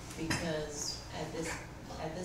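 Quiet, indistinct voices in a small room, with a couple of brief clicks.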